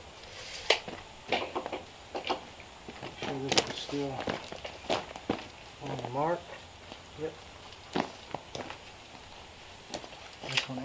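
Scattered sharp wooden knocks and clatter as a stair tread is handled and set onto wooden stair stringers, with short stretches of low voice between.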